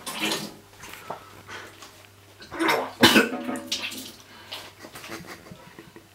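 A man coughing and spluttering over a kitchen sink, choking on a mouthful of dry ground cinnamon, in short bursts: one at the start and two close together near the middle.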